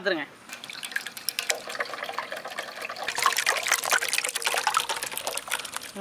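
Hands mixing chicken pieces with a wet spice paste in a bowl. Irregular wet squelching and clicking, louder in the second half.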